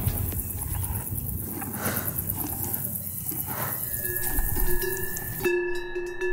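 Cowbells on grazing cattle ringing irregularly, several bells at different pitches overlapping, coming in clearly about four seconds in over a soft outdoor hiss.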